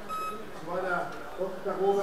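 A short, high electronic beep at the very start, followed by people talking in the background.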